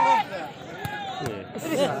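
People's voices talking and calling out close to the microphone, loudest right at the start, over crowd chatter.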